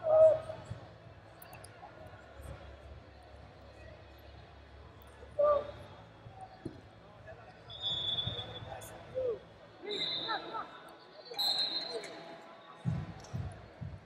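Scattered shouts from people in the stands and around the mat, echoing in a large, sparsely filled hall. A couple of dull thumps on the mat come near the end.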